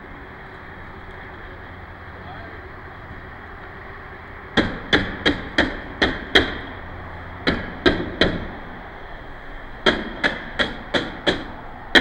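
Sharp knocking, like hammer strikes, beginning about four and a half seconds in. The knocks come in three runs of about six, three and five strikes, two to three a second, over a steady background hum.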